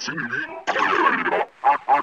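Animated cartoon character voices run through editing audio effects, doubled and distorted, with a dense stretch of overlapping voices in the middle and two short loud syllables near the end.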